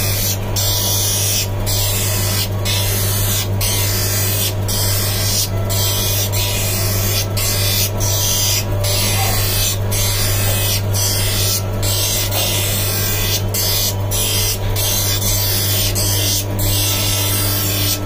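Hand lens edger running with a steady motor hum while a blue-cut spectacle lens is pressed against its grinding wheel, giving a gritty grinding hiss that dips briefly about once a second. This is the edging stage, grinding the lens down to size to fit the frame.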